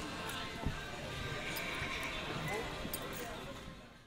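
Indistinct background chatter of people talking with faint music. There is a single sharp thump about half a second in, and everything fades out at the end.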